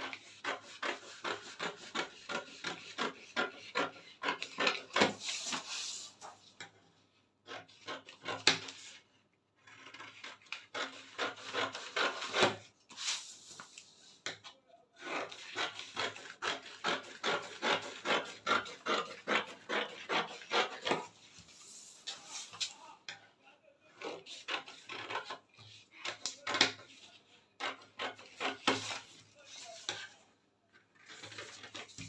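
Scissors cutting through a paper sewing pattern in runs of quick, closely spaced snips, with short pauses between the runs.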